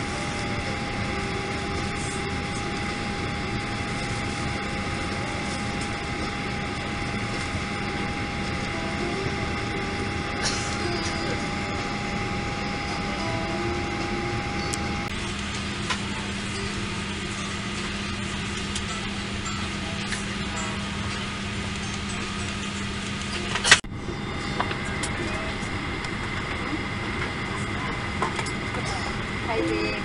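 Steady hum of a Boeing 737-800 airliner cabin at the gate, with a faint whine that stops about halfway. A single sharp click comes a little over three-quarters of the way through, after which the background changes slightly.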